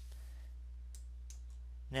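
A few faint computer mouse clicks about a second in, over a steady low electrical hum on the recording.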